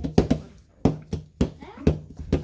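Hands tapping and slapping on a plastic tabletop: about five sharp, irregular knocks in two seconds, with faint voices between them.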